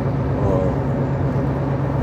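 Steady road and wind noise inside a moving car's cabin, with a constant low drone, recorded with the windows down at highway speed.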